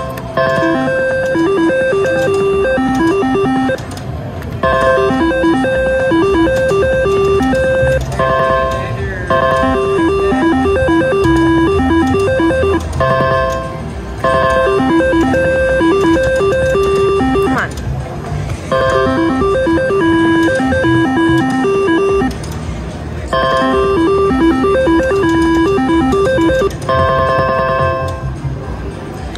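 Three-reel slot machine playing its electronic spin tune with each spin of the reels. The beeping melody repeats about six times, each run a few seconds long with a short break between spins.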